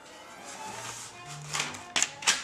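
Quiet background music with steady held notes, and a few sharp clicks near the end as a baby handles papers in a kitchen drawer.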